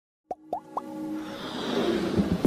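Intro sound effects for an animated logo: three quick plops, each gliding up in pitch, in the first second, then a music swell that grows steadily louder.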